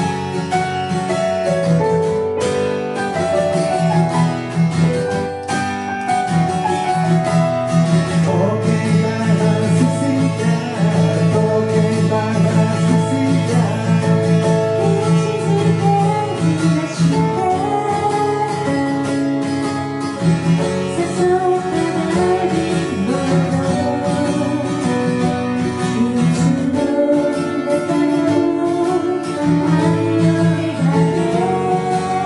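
Live acoustic pop song played on keyboard and acoustic guitar, with a woman singing lead over them after the opening bars.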